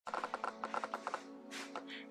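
Camera lens autofocus motor clicking rapidly, about nine clicks a second for just over a second, over a steady low hum.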